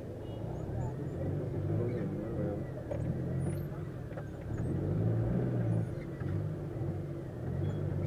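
Engine and road noise of a Nissan passenger vehicle heard from inside its cabin while it drives through night traffic: a steady low hum that swells about five seconds in.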